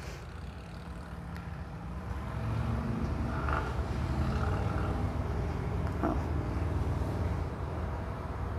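A low, steady mechanical rumble, like a motor running, growing louder about two seconds in and then holding, with a faint short blip near the end.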